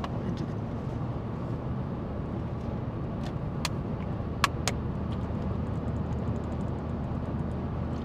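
Steady road and engine rumble inside a moving car's cabin. A few sharp clicks between about three and five seconds in, from a plastic water bottle being opened and handled.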